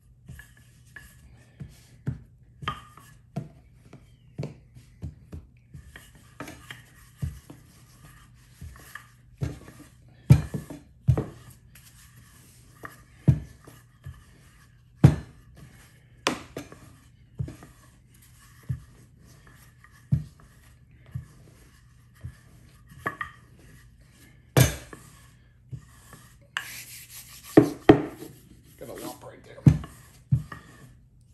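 Wooden rolling pin rolling out pie dough on a floured counter: irregular knocks, about one a second, as the pin is set down and pushed, with rubbing between them. A faint steady low hum lies underneath.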